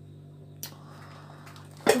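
Low steady hum with a faint rustle, a click about half a second in, and one sharp knock near the end.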